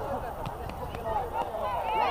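Indistinct calls and shouts from players and coaches across a football pitch, several voices overlapping with no clear words.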